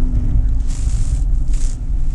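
Porsche Cayman S (987) flat-six engine running as the car slides round on snow, heard as a heavy low rumble with two short hisses about a second apart.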